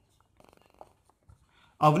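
Marker pen writing on a whiteboard: faint, short squeaks and scratches of the pen strokes. A man's voice comes in just before the end.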